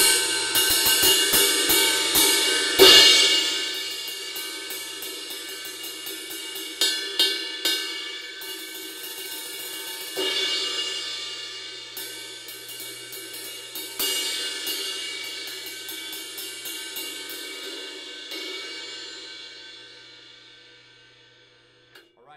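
A Sabian APX 24-inch ride, a B8 bronze sheet cymbal, played with drumsticks. It opens with a loud crash and a bigger accent about three seconds in, then a steady run of stick strokes with occasional accented hits, under a thick ringing wash. The strokes stop a few seconds before the end and the wash fades away.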